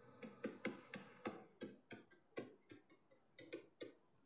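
Faint, irregular clicks and taps of a pen stylus on a tablet surface as a word is handwritten, about a dozen short ticks spread unevenly.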